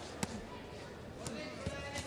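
Boxing gloves landing punches at close range: a few sharp thuds, the clearest about a quarter second in, over a low background of crowd and corner voices.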